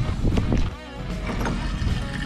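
Wind rumbling on the microphone, cut off sharply less than a second in, leaving a quieter low hum.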